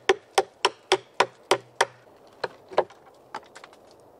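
Hammer poll of an OKNIFE Otacle A1 hatchet, sheath on, striking wood: about seven quick sharp knocks at three to four a second, then three lighter, slower blows.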